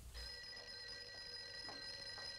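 Telephone bell ringing in an old film soundtrack: one steady, fairly faint ring starting just after the beginning and holding.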